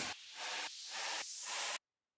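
A hissing white-noise riser, high and thin with no bass, swelling in level as a transition in the background music. It cuts off abruptly to dead silence just before the end.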